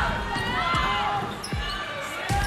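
A basketball bouncing on a hardwood court, with short high squeaks and arena crowd noise underneath.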